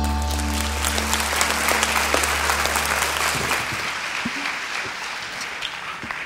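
Congregation applauding while the final held chord of a song, with a low bass note, rings on and fades out over the first few seconds; the clapping thins and tapers off toward the end.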